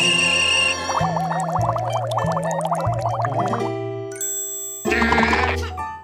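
Cartoon score with comic sound effects: a held ding-like tone at the start, then a warbling, wobbling tone over a stepping bass line, and a brief noisy swish about five seconds in.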